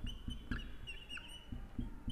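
Marker pen squeaking on a whiteboard while writing a word, a series of short high squeaks with each stroke.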